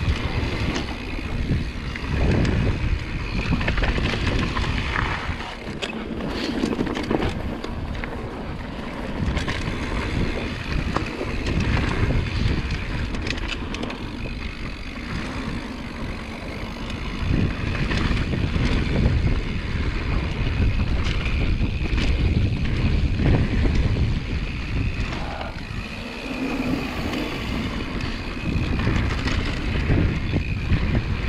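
Mountain bike descending a rough dirt singletrack at speed: knobby tyres rolling over dirt and rocks, with frequent rattles and knocks from the bike, and wind buffeting the microphone.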